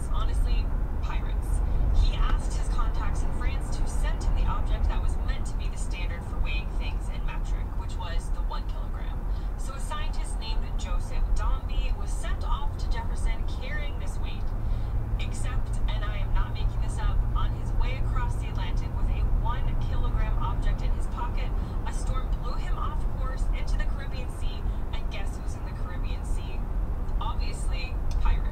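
Steady low road and engine rumble heard inside a car cabin at highway speed, with faint speech running underneath throughout. A low steady hum joins the rumble for several seconds past the middle.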